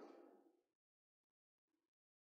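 Near silence: a faint tail fades out in the first half second, then only two faint, brief sounds before the audio goes dead.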